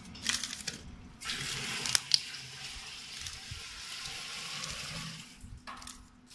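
Plastic gel pouches crinkling and clicking as hands rummage through a pile of them, over a steady hiss that lasts about four seconds and stops shortly before the end, with a low machine hum underneath.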